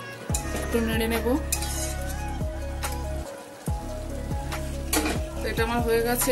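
Curry gravy sizzling and bubbling in a metal kadai as a pale liquid is poured in and stirred, with scattered clicks of a metal spatula against the pan. Background music plays over it.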